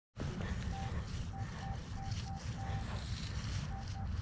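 Minelab Equinox 800 metal detector giving faint, short, same-pitched beeps at irregular intervals as its coil is swept over grass, over a low steady rumble.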